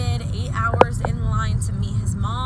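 Steady low rumble of a car's cabin (engine and road noise) under a woman's voice, with a single sharp click a little under a second in.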